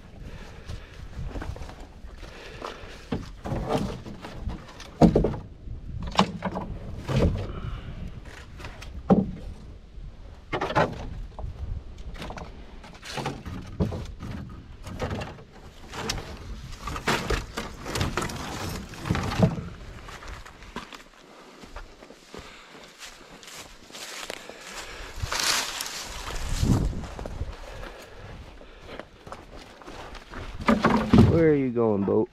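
Sticks and branches of firewood knocking and clattering as they are laid and dropped into a Nova Craft canoe's hull, in irregular thunks with rustling of twigs between them.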